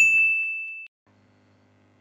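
A single bright synthesized chime ding from a logo-intro sound effect: one sharp strike, then a clear high tone that rings for just under a second and cuts off. A faint low hum follows.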